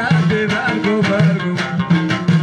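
Live Moroccan Amazigh folk music: a plucked lute plays the melody over frame drums and tambourines beating a steady rhythm.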